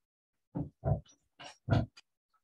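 A person coughing in a quick series of about five harsh bursts, the loudest near the end.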